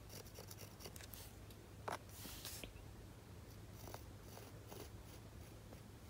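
Near silence: a faint, steady low hum of room tone, with a few soft clicks and a brief hiss about two seconds in.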